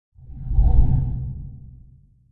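A deep whoosh sound effect, as used in a title animation. It swells quickly to a peak just under a second in and then fades away over about a second and a half.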